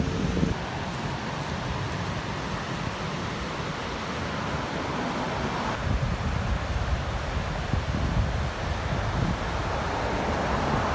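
Wind buffeting the microphone in gusts, with surf breaking on the beach behind.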